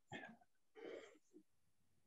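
Near silence, with two faint, short breathy sounds in the first second.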